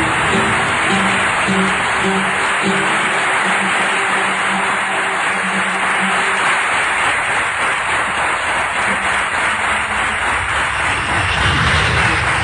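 An audience applauding steadily and loudly for the whole stretch, over a quiet background music track whose held low notes fade out about halfway through.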